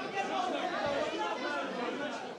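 Several people talking at once, indistinct overlapping voices with no words standing out.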